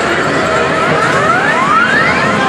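Arcade jackpot game's electronic sound effect: a series of overlapping rising tones, quickening toward the end, over the loud steady din of a busy arcade.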